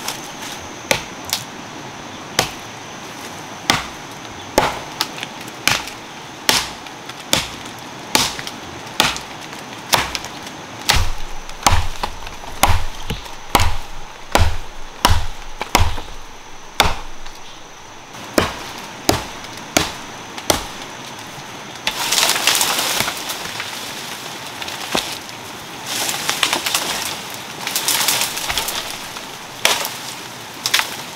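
Machete blows chopping into a small green tree trunk, sharp and regular at about one a second for some twenty seconds. After that comes a long rustle and crackle of leaves and branches as the cut tree comes down through the vines.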